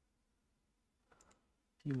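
A few faint computer-mouse clicks about a second in, as a colour is picked in charting software; otherwise near silence.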